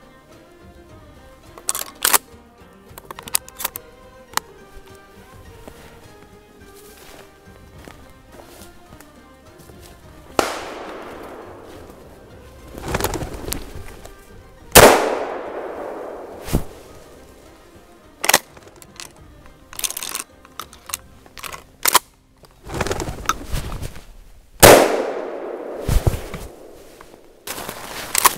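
Several shotgun shots fired at flushing ruffed grouse, each a sharp blast with a short echoing tail; the two loudest come about halfway through and near the end. Faint background music runs underneath.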